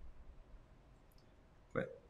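Faint, sparse clicks from computer input as a desktop program is being quit, over quiet room tone; a man says "Quit" near the end.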